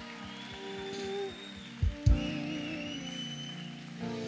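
Soft worship-band music playing under the pause: held, sustained notes, with two deep low hits about two seconds in.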